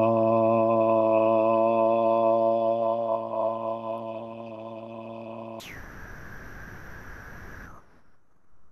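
A man's voice chanting a long, drawn-out 'Ah' on one steady low pitch: the seed syllable of the guru yoga of the white A. It slowly fades, and about five and a half seconds in the voice stops and gives way to a breathy hiss as the breath runs out.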